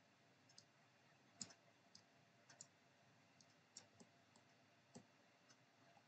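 Faint, scattered computer mouse clicks, about eight of them at irregular intervals, the clearest about a second and a half in, with near silence between.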